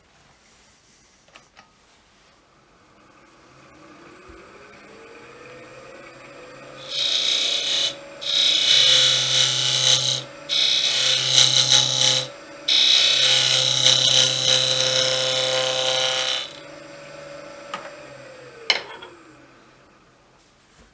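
Wood lathe running up to speed, its motor hum rising over the first few seconds and then holding steady. A gouge cuts the spinning wooden workpiece in four loud scraping passes of a few seconds each, with short pauses between them. Near the end the lathe winds down, its hum falling away.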